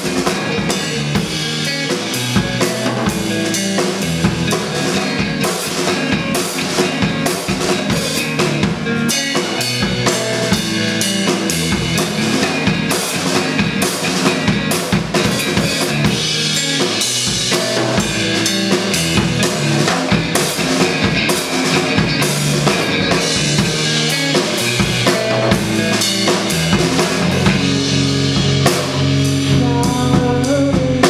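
Live rock band playing an instrumental passage: a drum kit, loud and busy with snare and bass drum hits, over electric guitar, with no pause.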